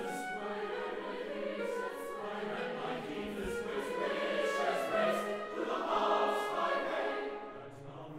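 Mixed choir singing sustained lines with full orchestra, the sound swelling about five to six seconds in and easing off near the end.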